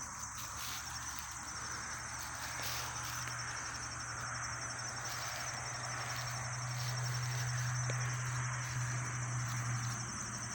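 Insects chirring steadily in the grass, a high, finely pulsing trill, over a low steady hum that grows louder in the second half.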